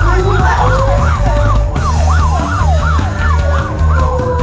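A siren-like wail rising and falling quickly, about two to three swoops a second, over the rock band's bass guitar and drums.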